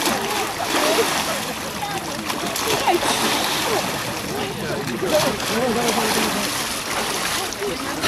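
Water splashing in an ice-hole bathing font as bathers move in and out of it, a continuous wash of splashes under people's voices.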